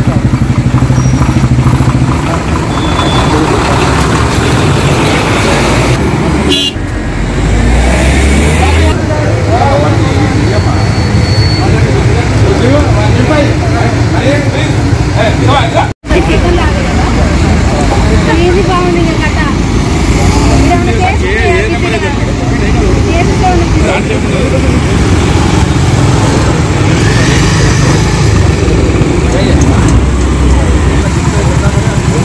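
Busy road traffic: motorcycle and car engines running with horns sounding, under people talking, briefly cut out once about halfway through.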